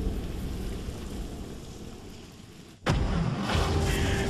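Trailer-style sound design: a deep, rumbling boom fades away, then a sudden sharp impact hits about three seconds in and is followed by more low rumble.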